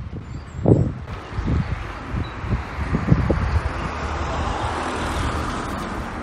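Road traffic noise: a steady rush of passing vehicle engines and tyres over a low rumble, swelling a little and easing near the end.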